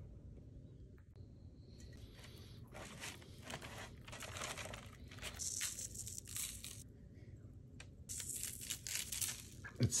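Parchment paper crinkling and rustling in irregular bursts as hands handle a whole raw fish on it, stuffing the cavity with lemon; the rustling starts about two seconds in and is loudest in two spells in the second half.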